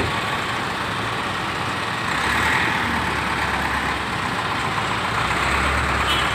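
Steady motor vehicle engine noise, with a low rumble that swells from about two seconds in.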